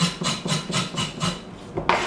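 Kitchen knife knocking and scraping on a cutting board in quick strokes, about five or six a second, then a pause and one louder knock near the end.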